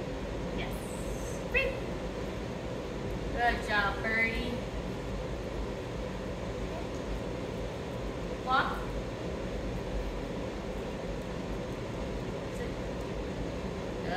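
Steady low room hum, broken by a few short high-pitched vocal sounds: one about a second and a half in, a quick run of them around four seconds, and one more near nine seconds.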